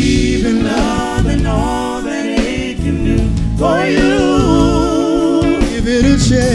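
Live soul/R&B band with a male lead singer singing wordless, wavering runs, then holding one long note with vibrato through the second half, over electric bass and guitar.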